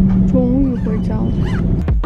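Airliner cabin rumble as the plane taxis just after landing, with a steady engine hum under it. A woman's voice sounds briefly over it.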